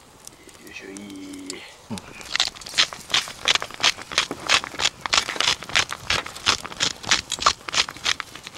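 Seasoning shaken from a shaker over shrimp on a grill: a quick, even run of sharp shakes, about three a second, starting about two seconds in. Before it, a short low hummed 'mm' from a person.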